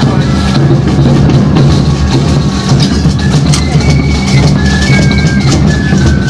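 Parade marching band playing, with drums and a bass drum.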